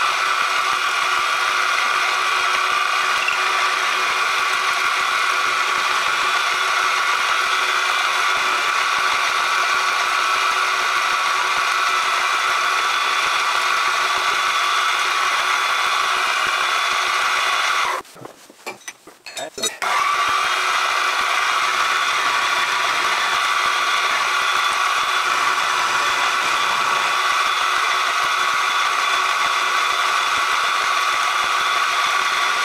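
Bench milling machine running with an end mill taking light facing cuts on a model-engine casting: a steady mechanical whine with cutting noise, broken off abruptly for about two seconds some eighteen seconds in, then running again.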